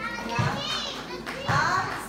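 Young children's voices calling out and chattering, with two high-pitched gliding calls, about half a second in and about one and a half seconds in, the second the loudest.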